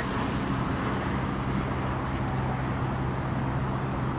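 Steady drone of road traffic and vehicle engines, with an even low engine hum and no change in level.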